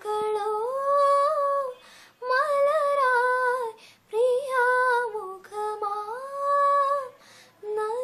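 A woman singing a Malayalam film song solo with no accompaniment, in long held phrases broken by short pauses for breath.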